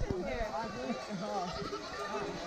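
A large herd of goats bleating, many overlapping wavering calls from animals on the move.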